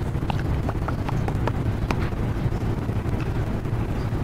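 Steady low hum of room and microphone noise, with a handful of light, irregular clicks in the first two seconds, like keys or a trackpad being tapped.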